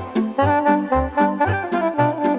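Instrumental Romanian folk dance music: a wind-instrument lead plays a running melody over an oom-pah accompaniment, low bass notes alternating with chords at about four beats a second.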